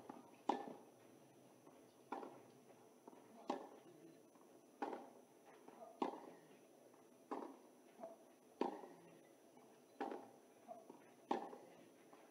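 Tennis ball struck back and forth by racquets in a long baseline rally: about nine sharp hits, evenly spaced roughly every second and a half.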